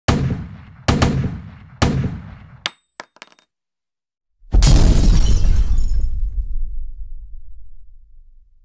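Produced intro sound effects: three heavy impacts about a second apart, each dying away, then a few quick clicks with a thin high ring. About four and a half seconds in comes a deep, loud boom that rumbles and slowly fades.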